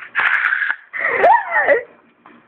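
A person's wordless voice: a breathy, hissing burst, then a high vocal sound that slides up and back down in pitch.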